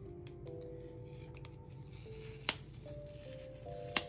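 Soft background music of slow held notes stepping from pitch to pitch, with two sharp clicks, one about halfway through and one at the very end, from sticker sheets and tools being handled on the desk.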